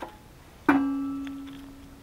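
A metal wrench strikes metal with a sharp clink, then rings with a clear tone that fades away over about a second and a half.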